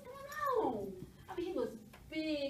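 A person's drawn-out, wordless vocal sound that rises and then slides steeply down in pitch, followed by a short second vocal sound near the end.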